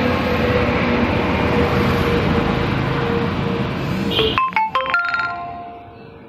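Steady roadside traffic noise that cuts off abruptly about four and a half seconds in, followed by a short electronic melody of beeps at changing pitches, like a phone ringtone.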